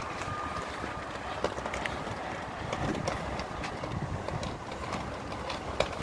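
Outdoor background noise: a steady low rumble and hiss, with a few faint clicks, as a phone records while it is carried along a sidewalk.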